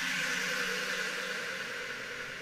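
A steady, hiss-like electronic drone with a few faint held tones and no beat, from the intro of a tekno track.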